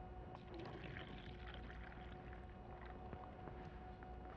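Distilled water poured faintly into a plastic cup, over a faint steady hum.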